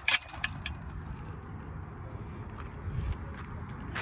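Metal clanking and rattling of a chain-link fence gate and its latch, several sharp clanks in the first second. Then a steady low background rumble.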